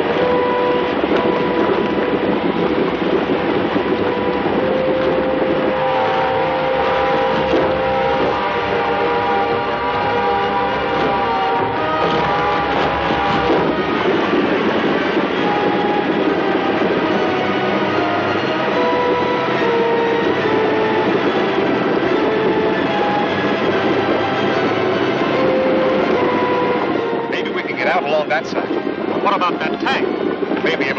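Dramatic film-serial score with held, stepping orchestral notes over a steady loud rushing roar. A flurry of sharp hits and quick pitch glides comes in near the end.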